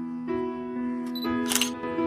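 Soft piano background music with held notes, and a single phone-camera shutter click about one and a half seconds in.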